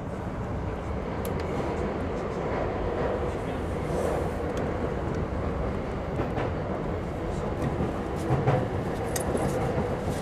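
Running noise of a JR E233-series electric commuter train heard from inside, behind the driver's cab: a steady rumble of wheels on the track, with a few sharp rail clicks near the end.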